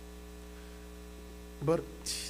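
A steady electrical mains hum, with a single spoken word breaking in near the end.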